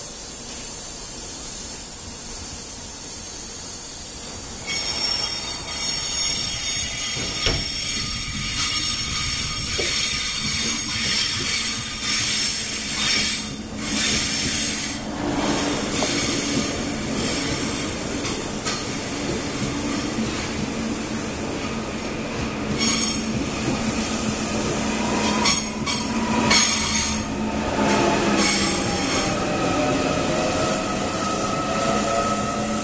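Korail 361000-series electric commuter train running into the station, its wheels squealing and rumbling on the rails, with a few rail-joint clacks. Near the end a whine falls in pitch as the train brakes.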